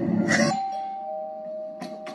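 Two-note 'ding-dong' doorbell chime: a higher note sounds about half a second in and a lower note follows a moment later, both ringing on. A short click comes near the end.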